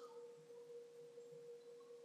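Near silence: faint room tone with a single steady, faint tone held throughout.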